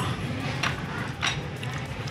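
Low background hubbub with faint distant voices, and two light clicks about half a second and a second and a quarter in.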